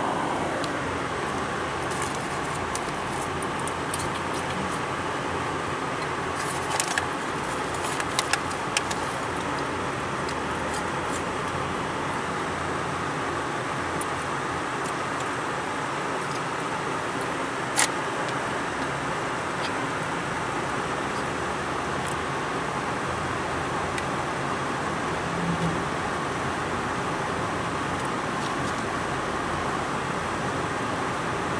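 Steady road and engine noise heard inside a moving car's cabin, with a few light clicks and rattles about seven to nine seconds in and one sharp click a little past halfway.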